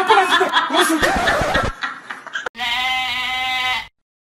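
A sheep bleating once in a long, steady call in the second half, after a person's voice in the first second and a half.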